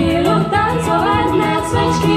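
Live pop band playing a song: a female lead vocal over electric guitars, keyboard and percussion.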